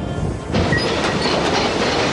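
Storm sound effect: a loud, steady rushing noise with a low rumble sets in suddenly about half a second in, replacing the music.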